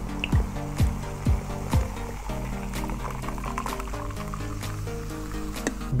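Background music with a steady beat that drops out about two seconds in, leaving held notes. Under it, cola is poured from a can into a glass jar mug.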